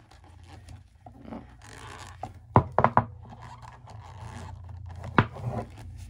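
A crochet hook working thick T-shirt yarn: soft rubbing and rustling as the fabric yarn is pulled through the loops, with three quick sharp clicks about halfway and one more near the end.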